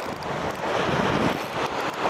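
Wind buffeting the microphone over the steady wash of sea waves on a rocky shore.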